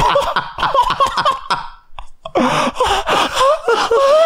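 Two men laughing hard into close microphones: quick bursts of laughter, a brief pause for breath about halfway, then gasping, wheezy laughter that rises back up.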